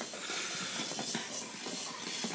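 A steady faint hiss, with a few faint, irregular light ticks and no clear motor whine.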